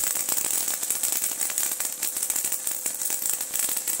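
High-voltage arc from a flyback transformer driven by a 555 timer and MOSFET, crackling and sizzling steadily across a gap of about four inches. It starts abruptly, over a steady whine.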